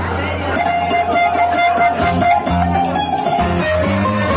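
Live Ikarian folk dance music with a violin and guitar, starting about half a second in. Plucked guitar notes run under a held violin melody, with crowd chatter beneath.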